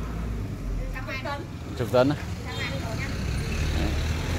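A vehicle engine running steadily nearby, a low even hum.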